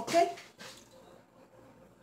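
A woman's voice says a short "¿ok?". Then comes faint, soft handling as a slice of baked cornbread is moved on its metal baking tray, and the rest is near quiet.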